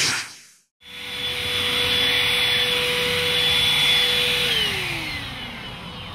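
A whoosh fades out at the start. Then a 600 W vacuum/blower motor runs with a steady whine, and about four and a half seconds in it is switched off, its pitch falling as it spins down.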